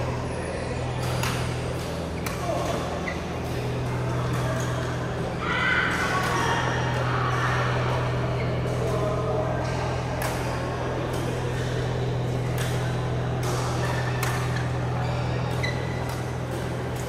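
Badminton rackets striking shuttlecocks in a large sports hall: sharp clicks at irregular intervals, from the near court and neighbouring ones. Voices chatter over a steady low hum.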